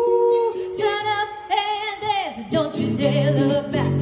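A woman singing live with a semi-hollow-body electric guitar accompanying her. She holds long notes with vibrato, the last one sliding down about two seconds in, after which the guitar's lower notes come forward.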